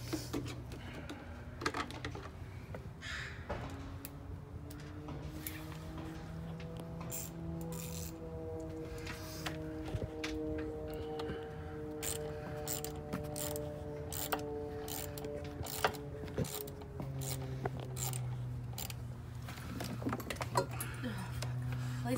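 Scattered metal clicks and clinks of sockets and hand tools being handled and worked against engine fasteners, over a steady low hum. Through the middle a sustained droning tone rises slightly, holds, then fades out.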